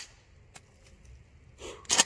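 Remington 870 pump-action shotgun being handled between shots: mostly quiet, a faint click about half a second in, then near the end a short rustle and a sharp metallic clack.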